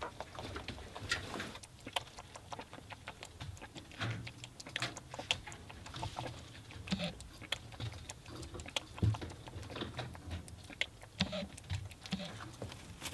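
Rabbit lapping water from a plastic bowl: a quick, irregular run of small wet clicks from its tongue and mouth.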